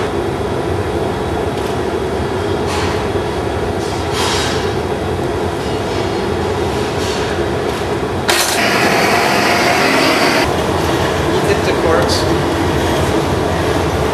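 Steady roar of glassblowing hot-shop burners (furnace and glory hole), with a few light clinks and a loud hiss starting about eight seconds in and cutting off about two seconds later.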